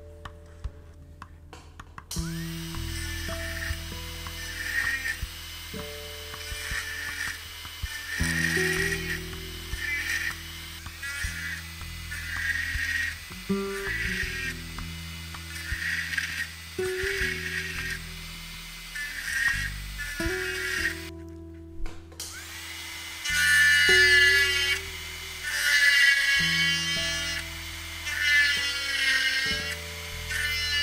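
A jeweller's high-speed rotary handpiece with a small burr whining in repeated short bursts as it cuts into an 18ct gold earring, preparing the seats for setting stones. The bursts are loudest near the end.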